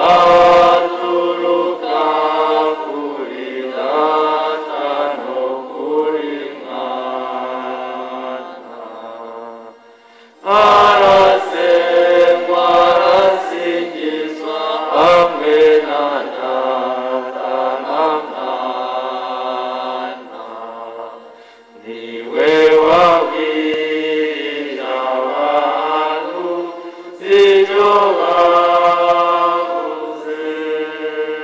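Church choir and congregation singing a hymn together, in long phrases with short breaks between them.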